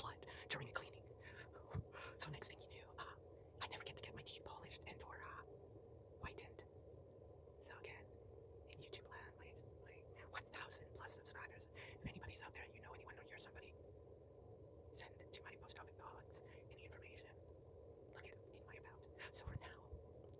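Close-miked mouth sounds: soft lip smacks and wet tongue clicks, scattered and irregular, mixed with faint whispering.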